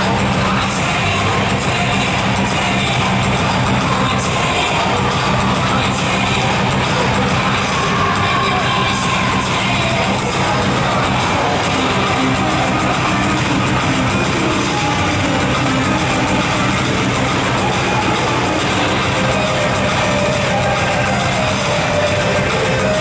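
Loud music played over the public-address loudspeakers of a large sports hall, carrying on steadily, with crowd noise underneath.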